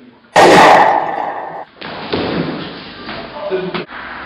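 A single pistol shot about a third of a second in, sudden and very loud, dying away over about a second. A second, longer burst of noise follows about a second and a half later.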